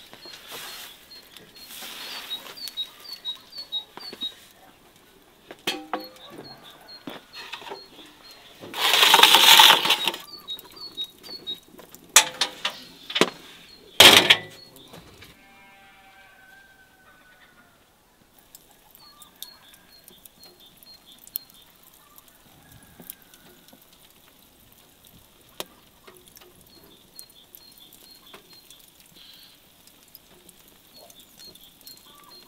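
Scattered clinks and knocks of handling, with one loud rush of noise about nine seconds in and a sharp crack about five seconds later. Short high chirps repeat in small runs in the background, like small birds.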